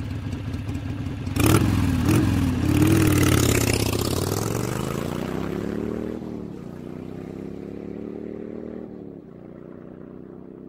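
Motorcycle engine revving, its pitch rising and falling several times, with a sharp louder burst about a second and a half in. It settles to a quieter, steadier run near the end.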